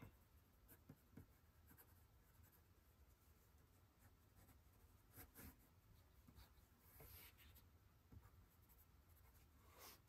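Faint scratching of a blue pencil drawing lines on paper, in short, scattered strokes.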